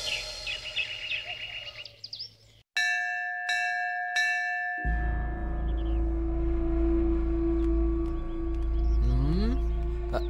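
A temple bell struck three times in quick succession, each stroke ringing on, after a few short bird chirps. A low steady drone of background music then starts and holds.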